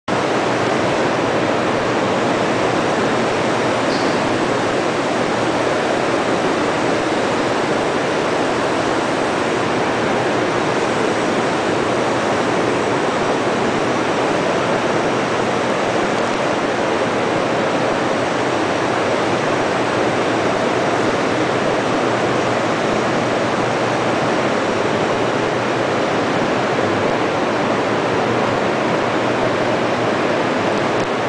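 Orics R20 rotary tray-sealing packaging machine running, a steady, loud noise that holds level without breaks.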